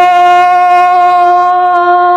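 A singer's voice holding one long, steady note over a karaoke backing track.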